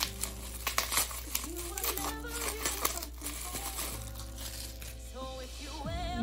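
Plastic bubble wrap crinkling and crackling in the hands as it is pulled off a small blush compact, under background music.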